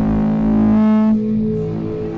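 Live band music: an amplified guitar and electronics holding loud, sustained droning notes. The higher notes cut out a little past a second in, leaving the lower drone.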